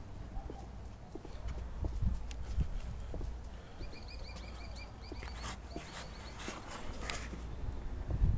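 Clear plastic zip-top bag rustling and crackling as it rubs against the camera microphone, with scattered sharp clicks and low handling rumble. About halfway through, a rapid run of high chirps, around five a second, lasts a couple of seconds.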